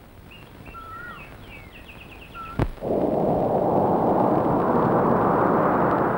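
Faint birds chirping, then a sharp click a little over two and a half seconds in, followed by a loud, steady rush of wind.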